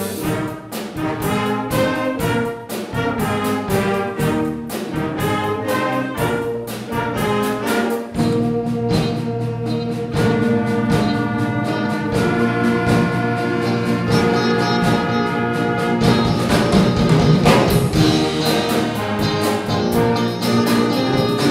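Concert band of woodwinds, brass and percussion, including a drum kit, playing a piece. A steady percussive beat for the first eight seconds or so gives way to held chords, and the band grows louder near the end.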